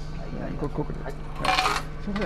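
Coins clattering into a bus fare box in one short, bright burst about one and a half seconds in, over the steady low hum of the bus, with a voice briefly before it.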